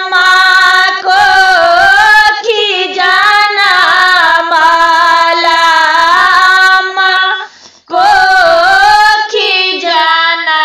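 A woman singing a Maithili samdaun, the Sama-Chakeva farewell song, in long held, wavering notes, with a short break about eight seconds in.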